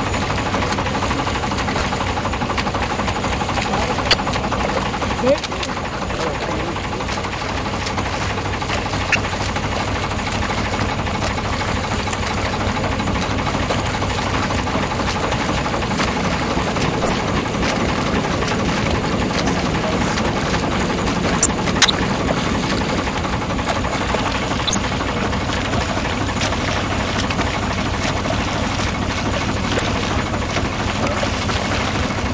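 A boat engine running steadily with a constant hum, with a few sharp clicks about four, nine and twenty-two seconds in.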